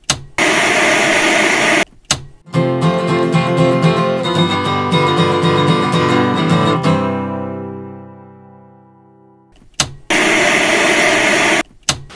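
Short acoustic guitar intro sting: strummed and plucked chords that ring out and fade away. Bursts of TV-static hiss come before the guitar and again near the end.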